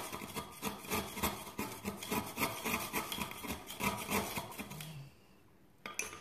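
A charcoal stick grated on a small metal grater, quick rasping strokes several times a second, grinding it to dust. The grating stops about five seconds in, followed by a single sharp knock near the end.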